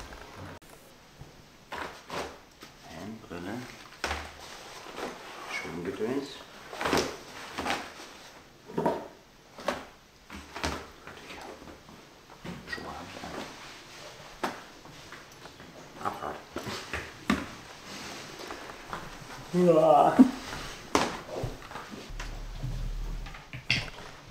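Clothing and gear being packed by hand into a plastic storage box: scattered knocks, clicks and rustles, with short bits of talk between them.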